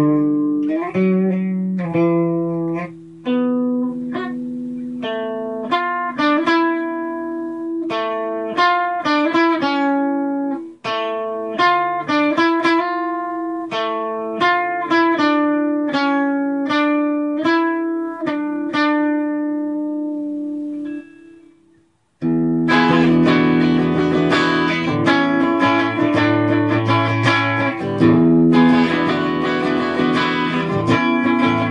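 Electric guitar played solo: a melodic line of single ringing notes, then after a brief stop about 22 seconds in, louder, denser riffing with fast picking.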